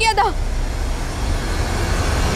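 A woman's voice breaks off, then a steady low rumble of a passing motor vehicle and road traffic.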